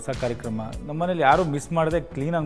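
Speech over background music.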